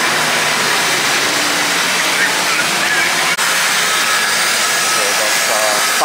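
Diesel coach buses idling at close range, a loud, steady rushing engine and fan noise with a low hum beneath it. Voices come in near the end.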